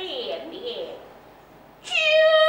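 Kunqu opera stage voice in its stylised delivery: a drawn-out vocal sliding down and then up in pitch, a short lull, then a loud, high voice coming in just before the end.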